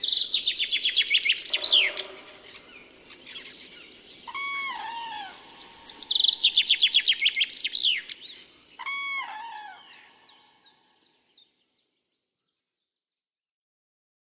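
Common chaffinch singing: two songs about six seconds apart, each a quick run of notes dropping in pitch and ending in a flourish. A lower, different bird call comes twice, once after each song, and the sound fades away in the last few seconds.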